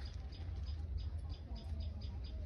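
A rapid, even series of short high-pitched chirps, about five a second, over a low rumble.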